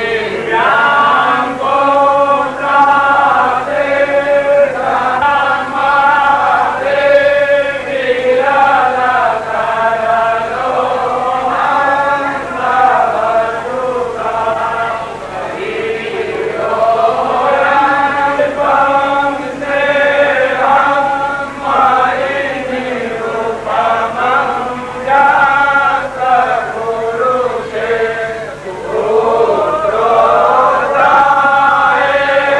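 Hindu devotional song to Krishna sung by voices in a chanting style, with long held, bending melodic lines over a steady low drone.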